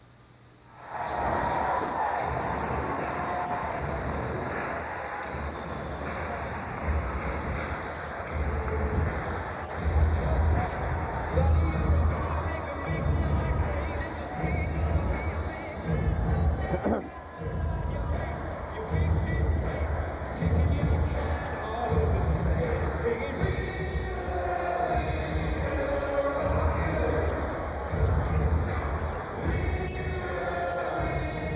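Ice-hockey arena crowd noise with music over the arena's public-address system, a heavy beat about once a second. It starts suddenly about a second in, out of near silence.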